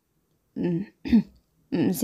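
A woman clearing her throat in two short bursts, then speaking again near the end.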